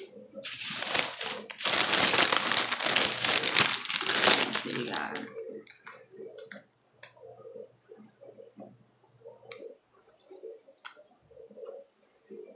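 Loud rustling and rubbing close to the microphone for about five seconds, handling noise from the recording phone or a plastic candy wrapper. It gives way to faint, short, muffled low sounds and a few light ticks.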